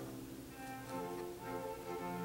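Quiet background music of bowed strings, violin and cello, holding slow sustained notes that change a few times.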